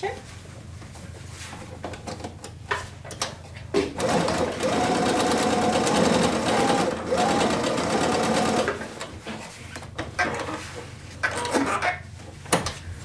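Pfaff computerised sewing machine stitching a seam, running in one continuous stretch of about five seconds that starts about four seconds in, with a short dip midway. Before and after it, light clicks and rustles as the fabric is handled at the machine.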